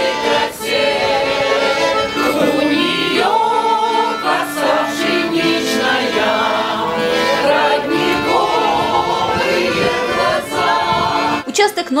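Amateur choir of elderly singers performing a Russian folk song in unison, accompanied by a bayan (button accordion). The singing carries on without a break until near the end.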